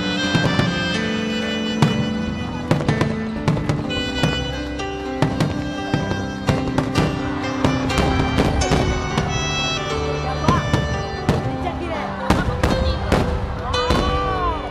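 Aerial fireworks bursting in quick succession, many sharp bangs and crackles, over loud music with long held notes.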